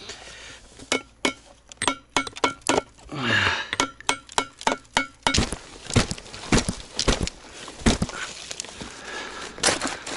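Gravel and loose rocks clicking and crunching as someone works and steps in a gravel-filled pit: a quick run of sharp clicks in the first half, then a few heavier crunches from about five seconds in.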